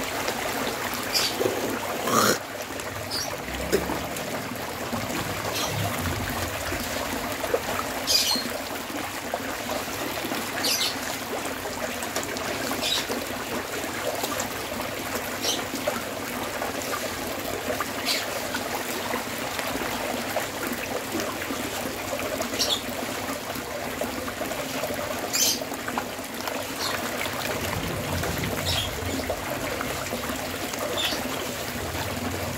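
Many farmed catfish thrashing at the surface of a crowded concrete pond as they feed: a steady churning and slapping of water, with a sharper splash every few seconds.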